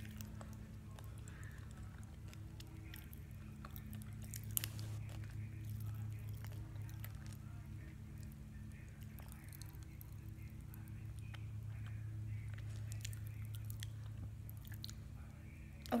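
Pop Rocks candy being chewed in the mouth: faint, irregular crackling pops and chewing, with one sharper pop about four and a half seconds in. A steady low hum runs underneath.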